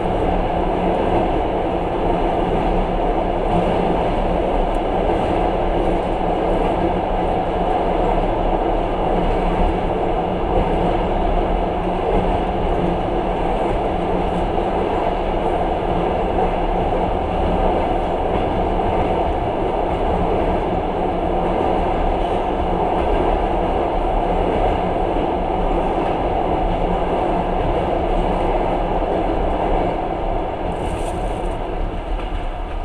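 Passenger train running steadily across a steel truss bridge, heard from inside the carriage: an even, continuous rumble of wheels on rails and the bridge structure.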